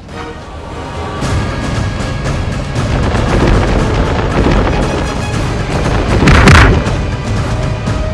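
Dramatic action music with added fight sound effects: booming impacts building up, the loudest crash about six and a half seconds in.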